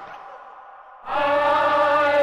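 A group of voices singing together in long held notes. The singing comes in about a second in, after a quieter stretch.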